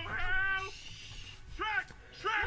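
A cartoon character's voice pitch-shifted up high: one drawn-out vocal sound over the first half-second or so, then a short rising-and-falling one about one and a half seconds in.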